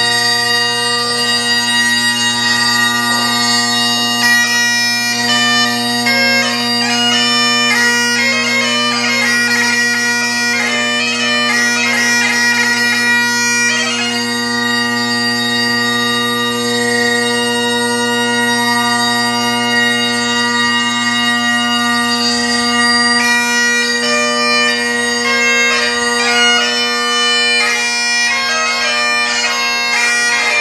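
Solo Great Highland bagpipe playing a tune: the drones hold one steady note underneath while the chanter carries the melody above, with quick flurries of short ornamental notes in places.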